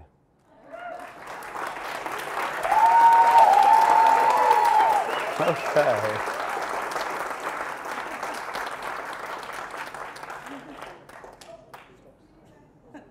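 A roomful of people applauding and cheering as the go-live is confirmed. It swells within the first few seconds, with whoops over the clapping, then dies away gradually.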